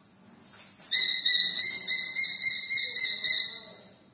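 A high, drawn-out whistling call about three seconds long, starting about a second in and wavering slightly in loudness before fading out.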